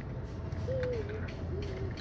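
Soft hummed 'hmm' tones from a man's voice: one sliding slightly down about midway, and a shorter one near the end, over a steady low background hum.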